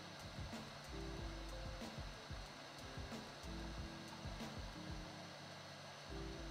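Nimble nail-painting robot's built-in hot-air dryer blowing a steady hiss to dry the freshly painted colour coat, with quiet background music underneath.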